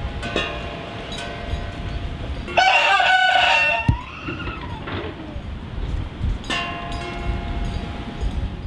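A rooster crowing once, about two and a half seconds in, a loud call lasting just over a second that bends down in pitch at its end.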